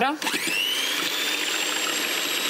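Electric hand mixer switched on, its motor whine rising in pitch as it spins up about a quarter second in, then running steadily as its beaters whisk egg whites in a glass bowl.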